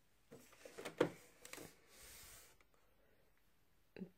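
Plastic top cover of a Janome Memory Craft 9400 sewing machine being lifted open on its hinge: a few clicks and handling knocks, the loudest a sharp knock about a second in, followed by a soft rustle.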